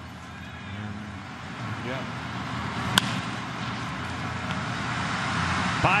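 A single sharp crack of a bat hitting a baseball about halfway through, over steady ballpark background noise that grows louder after the hit as the line drive carries.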